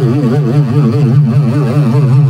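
Loud, electronically processed buzzing drone whose pitch warbles evenly up and down about seven times a second.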